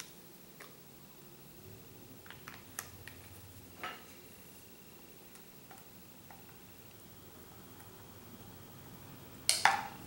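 Faint small clicks and taps of a makeup brush and containers being handled while liquid latex is brushed on, in a quiet small room, with a louder sudden noise just before the end.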